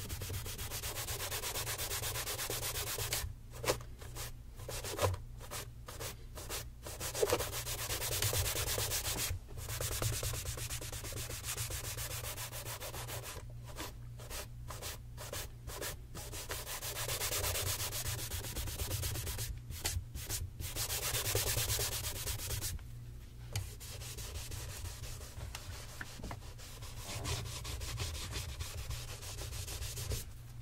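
A dark cloth rubbing back and forth over a brown leather tassel loafer in steady buffing strokes, broken by several brief pauses.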